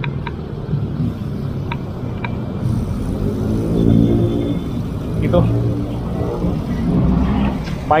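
Street traffic with a motor vehicle engine running nearby, a steady low hum. A few brief light clicks come early, and short words are spoken near the end.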